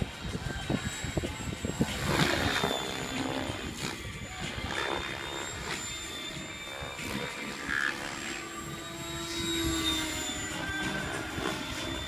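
Electric Mikado Logo 600 SX RC helicopter's rotor blades and motor whine during 3D aerobatic flight, the blade noise and whine shifting in pitch and swelling louder around two seconds in and again near ten seconds as it manoeuvres.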